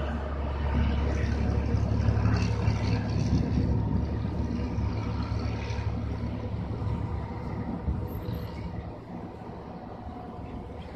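Low, steady rumble of a column of heavy military trucks, among them a missile launcher carrier, driving away. It fades gradually as the vehicles recede.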